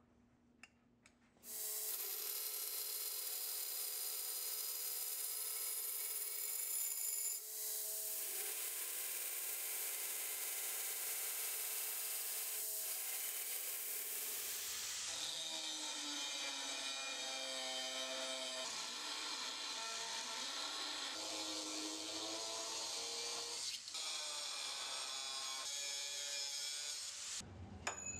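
Belt grinder running with its abrasive belt grinding a 1084 high-carbon steel dagger blank to profile. There is a steady grinding hiss over a few steady motor tones. It starts about two seconds in and shifts in tone twice along the way.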